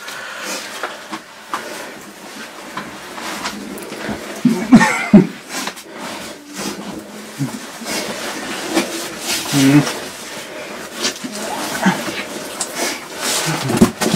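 A caver squeezing through a narrow rock passage and climbing out of a hole: irregular rustling and scraping of clothing against stone, with heavy breathing and a few brief grunts or murmurs.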